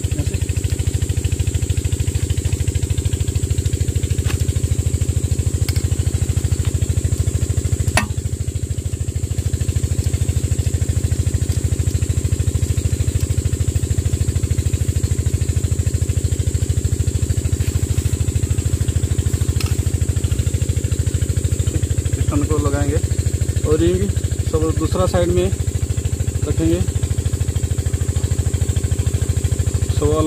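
An engine running steadily at a constant speed, with a rapid, even pulsing. A single sharp tap comes about eight seconds in.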